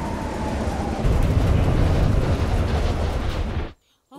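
Rocket-flight sound effect: a steady rushing rumble, heavier and louder in the low end from about a second in, with a faint falling whistle over the first second. It cuts off suddenly near the end.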